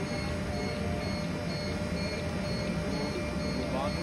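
Steady hum of rail-terminal loading equipment with a faint, rapidly repeating high beep and faint voices.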